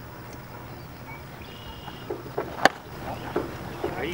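A pitched baseball striking with one sharp smack about two and a half seconds in, over steady outdoor background, with a few short faint voice sounds around it.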